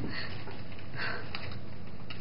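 A woman's two breathy, tearful sniffs, about a second apart.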